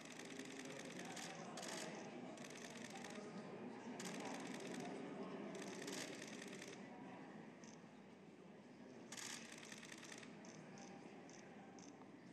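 Repeated bursts of rapid-fire camera shutter clicks, each burst lasting about a second, with a few single clicks near the end, over a faint murmur of voices.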